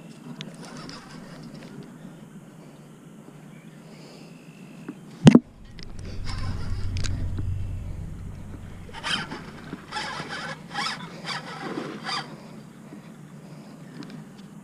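Baitcasting reel working under the strain of a big catfish on the line. A sharp knock about five seconds in is the loudest sound, followed by a low rumble of handling. From about nine seconds the reel gives a run of about seven short bursts over three seconds.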